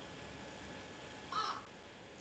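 A single short animal call, harsh and brief, about one and a half seconds in, over faint steady background hiss.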